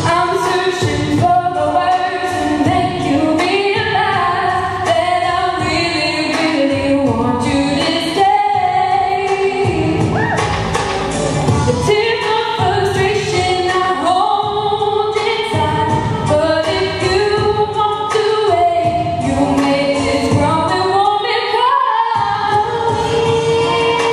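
All-girl a cappella group singing a pop song: a solo lead voice over layered harmony from the backing singers, heard through the stage PA.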